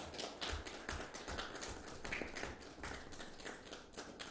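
A small group applauding: many quick overlapping hand claps that thin out near the end.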